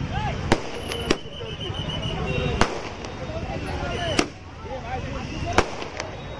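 Firecrackers bursting: five sharp bangs about one to one and a half seconds apart, over the chatter of a large crowd.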